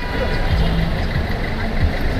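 Busy street noise: a vehicle engine running low, with the voices of a crowd mixed in.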